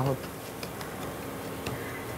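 A plastic slotted spatula stirring and scraping semolina as it roasts in ghee in a nonstick pan, with a few faint small ticks, over a steady low hum.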